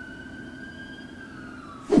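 A single high, siren-like whistling tone, rising slightly and then falling away over about two seconds, over a faint low hum.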